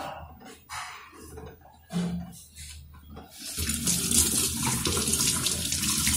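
Steady rushing of running water, like a tap, that starts a little over halfway through; before it there are only a few faint, brief sounds.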